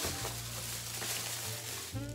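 Rustling and crinkling of a plastic shopping bag and packaging while items are rummaged through, over soft steady background music.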